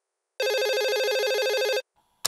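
A telephone ringing once: a rapid trilling ring that starts just under half a second in and cuts off suddenly after about a second and a half.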